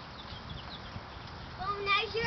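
A high-pitched, wordless vocal sound from a person, gliding up and wavering, that starts about one and a half seconds in and is the loudest thing heard. Before it there are only faint short high chirps over a quiet outdoor background.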